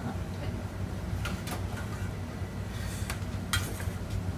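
Several light clinks and knocks of kitchen utensils and a small metal tray being handled and set down on a stainless steel counter, the loudest near the end. A steady low hum runs underneath.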